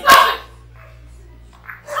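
A shouted "it!" with a sharp crack at its start, then a low steady hum. Raised voices start again near the end.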